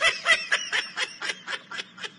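A person laughing: a quick run of short laughs, about four a second, loudest at the start and fading.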